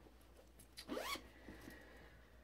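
A zipper on a fabric project bag pulled once, a quick quiet zip about a second in, with a few small handling ticks after it.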